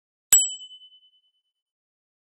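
A single bright, bell-like ding chime sound effect struck once about a third of a second in, ringing out in a pulsing fade that dies away within about a second.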